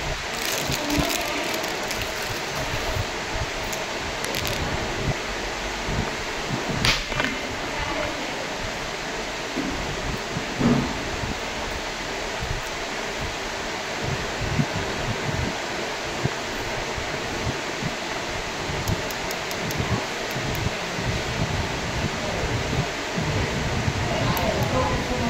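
Steady hiss of room noise with a few small clicks and rustles as a syringe and vial are handled.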